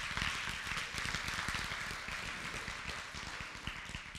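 Congregation applauding, the clapping dying away gradually.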